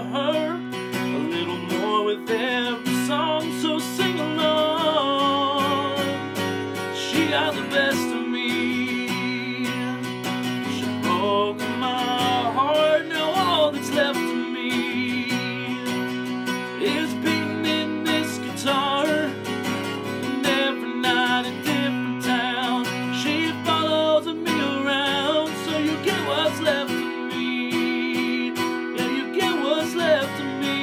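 A man singing a country song with a wavering vibrato, accompanying himself on a strummed acoustic guitar.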